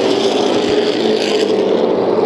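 A pack of super late model stock cars running at race speed, their V8 engines making a loud, steady drone.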